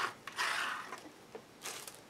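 A plastic credit card scraped across a painted canvas board: one longer stroke that fades out over about half a second, then a shorter one near the end.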